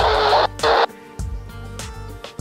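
Handheld VHF/UHF radio's speaker hissing with static from a fading FM satellite downlink as the satellite sets low, cutting off abruptly a little under a second in. Quieter background music continues after it.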